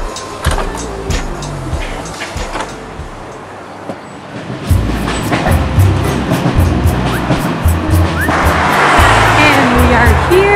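Laid-back acoustic guitar background music with a steady beat, with train and vehicle noise underneath. The music grows louder from about five seconds in.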